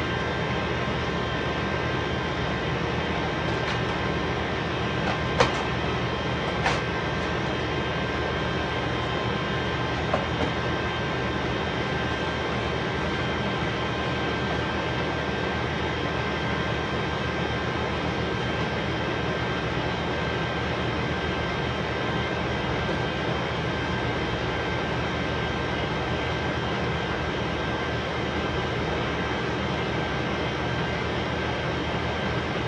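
Steady mechanical drone with a faint constant whine, and a few short knocks about five to ten seconds in.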